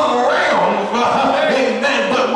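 A man's voice preaching into a microphone in a loud, drawn-out delivery that the recogniser could not make out as words, over music with steady held notes.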